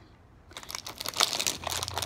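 Plastic wrapper of a packet of Arnott's Tim Tam mint biscuits crinkling as it is handled, a rapid run of crackles starting about half a second in.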